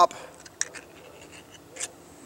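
Pull-ring lid of a tin can being levered open: a few faint scratchy clicks, then a sharper short crack near the end.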